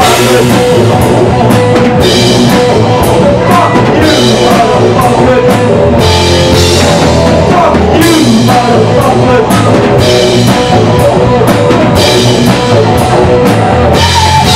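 Live rock band playing loudly: a Pearl drum kit with Zildjian cymbals driving a steady beat under distorted electric guitar and bass, in an instrumental stretch without vocals.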